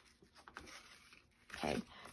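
Faint rustling and small handling sounds of paper pages as the hand-stitched binding of a paper journal is pulled tight.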